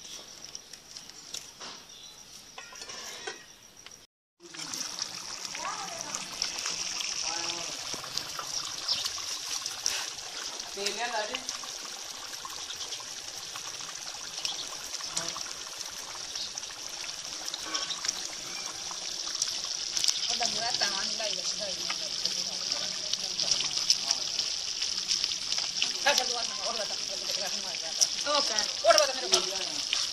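Chicken karahi curry simmering in a pot on the stove: a steady bubbling hiss that starts after a brief dropout about four seconds in. Faint voices come and go behind it.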